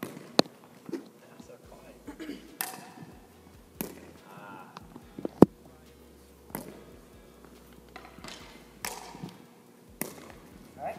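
Sharp, irregular taps of a wooden pickleball paddle striking a plastic wiffle ball and the ball bouncing on a hardwood gym floor during serving practice, the loudest crack about five seconds in.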